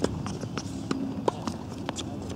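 Tennis ball knocks on an outdoor hard court: one sharp knock at the start, then three lighter ones spread unevenly over the next two seconds.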